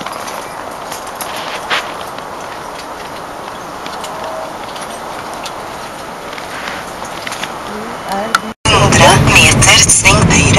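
Steady background noise with faint clicks and knocks. Near the end it cuts off sharply, and loud, close voices begin.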